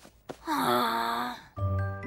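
A cartoon boy's long, breathy, dejected groan of "oh", followed about one and a half seconds in by the start of a musical transition cue.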